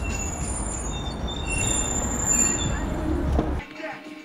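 Outdoor street noise: a steady rumble with a few thin, high squealing tones over it, cutting off abruptly near the end.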